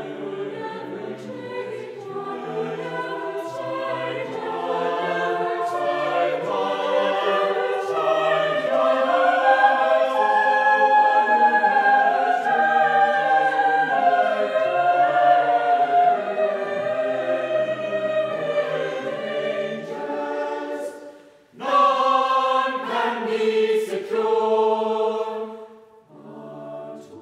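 Mixed choir of men's and women's voices singing in parts, growing to its loudest in the middle. It breaks off briefly about three-quarters of the way through, then sings a short closing phrase that stops just before the end.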